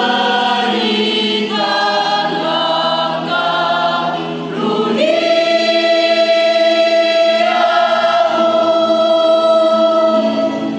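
Mixed choir of men's and women's voices singing a slow hymn in chordal harmony. The chords change a few times, then about halfway through the voices swell into one long held chord.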